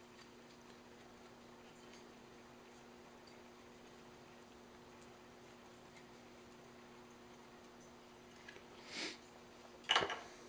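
Quiet room tone with a steady low hum while glue is spread by hand on a steel blade. There is a soft brushing noise about nine seconds in and a single sharp tap at the very end, as something is set down on the wooden bench.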